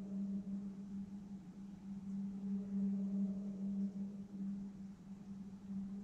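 A steady low droning tone with fainter overtones above it, from the horror film's soundtrack playing on the television.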